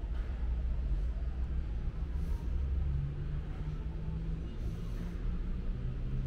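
Steady low rumble with a faint, wavering hum: the background noise of a large indoor hall.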